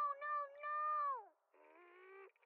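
A cartoon character's high-pitched voice crying "No, no, no!" from the episode's soundtrack, the last "no" drawn out and dropping in pitch as it ends. Faint growling follows near the end.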